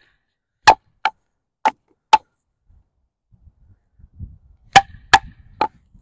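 Wooden baton striking the spine of a Takumitak Charge D2 steel tanto knife, driving the blade through a strip of wood: seven sharp knocks, four in the first two seconds and three more near the end after a pause.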